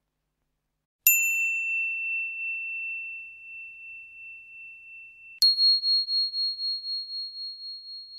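Two bell dings about four seconds apart, each a sharp strike followed by a clear, single ringing tone that fades slowly with a slight pulsing; the second ding is higher-pitched than the first.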